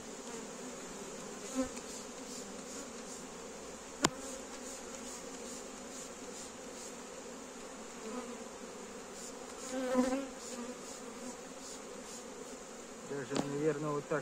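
Honey bees buzzing steadily from an opened hive of a calm colony. A single sharp click about four seconds in, and a brief louder swell of sound around ten seconds.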